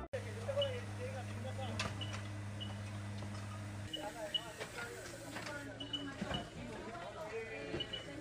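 Faint on-scene background sound with distant voices and scattered small clicks and knocks. A low steady hum runs through the first four seconds and then stops.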